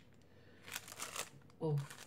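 Clear plastic packaging crinkling as it is handled and turned, a few brief rustles around the middle.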